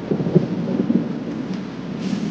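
Rolling rumble of thunder that starts suddenly, is loudest in its first second, then slowly eases off.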